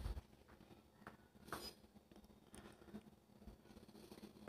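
Near silence with a few faint, brief rustles and taps from hands handling a freshly cooked matlouh flatbread over the pan.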